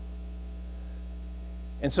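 Steady low electrical mains hum from the microphone and recording chain. A man's voice starts a word near the end.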